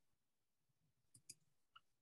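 Near silence with three faint clicks a little past the middle: two close together, then one more.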